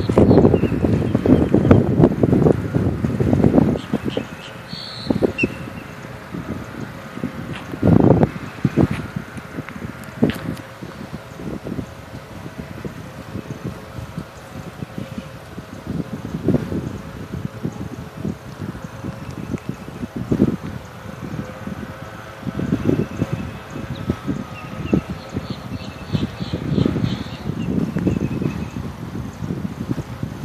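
Wind buffeting the microphone in irregular low gusts, loudest in the first few seconds and again about eight seconds in, with a few faint short high chirps near the end.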